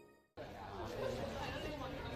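Indistinct chatter of many students in a large room. It starts abruptly about a third of a second in, after a short silence, and carries on at a steady low level.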